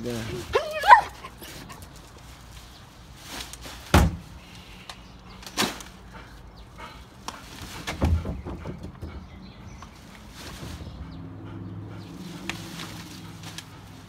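A dog's short, high whine near the start, followed by scattered knocks and thumps from a full plastic trash bag and a plastic wheelie bin being handled, the loudest about four seconds in.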